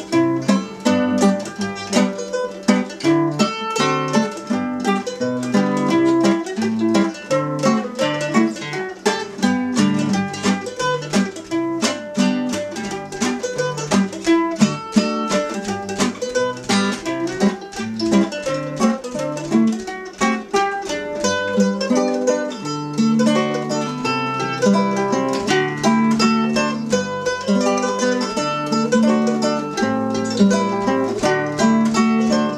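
F-style mandolin picking an instrumental folk tune in a steady rhythm, with acoustic guitar accompaniment underneath.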